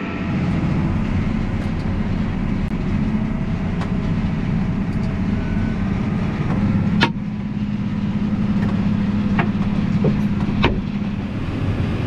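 Steady low drone of farm machinery at work: a tractor's diesel engine heard from its cab while it runs beside a John Deere combine harvesting corn. A couple of sharp clicks or knocks come through, one just past the middle and one near the end.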